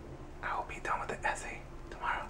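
A man whispering a few words, with short breathy bursts of speech.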